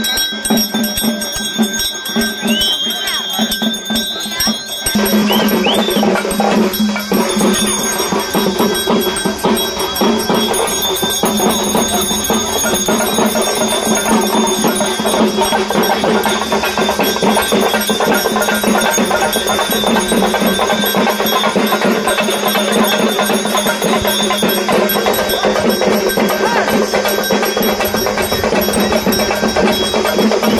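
Traditional South Indian temple festival music: fast, dense drumming with ringing bells over a steady held tone, filling out and getting louder about five seconds in.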